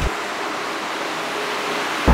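A steady, even hiss with no low end and no change, starting and stopping abruptly.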